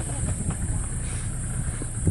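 Open-sided safari vehicle driving on a dirt track: a steady low rumble of engine and road noise, with a couple of light knocks from the body.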